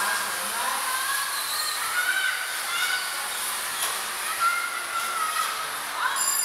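Electric bumper cars running around an indoor rink: a steady hissing din, with faint distant voices calling over it.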